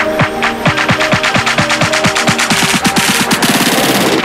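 Electronic dance music: steady kick-drum beats quicken into a fast drum roll, with a rising hiss building near the end.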